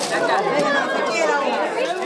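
Many voices of children and adults chattering at once, overlapping so that no single speaker stands out.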